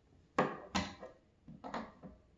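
Short wooden knocks and clacks from a cabinet door as a door handle is held and fitted to it: two sharp knocks about half a second in, then a softer double knock near the end.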